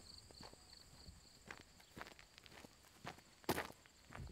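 Faint footsteps of a man walking, a step about every half second, the loudest about three and a half seconds in.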